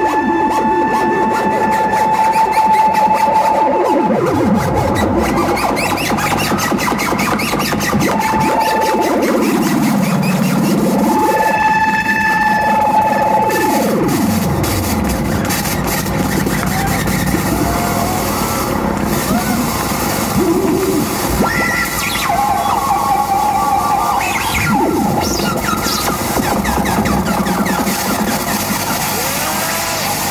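Live experimental electronic music from modular synthesizers and electronics: a dense noisy texture with held tones and several deep swooping glides that fall and rise again in the first half.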